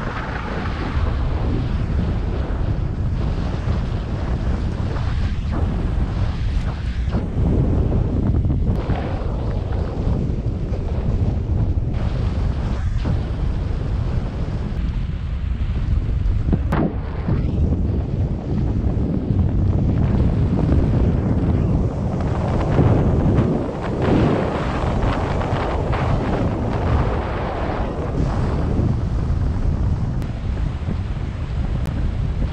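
Wind rushing over an action camera's microphone during a paraglider flight: a loud, steady low rumble that swells and eases with the gusts. A brief click sounds about seventeen seconds in.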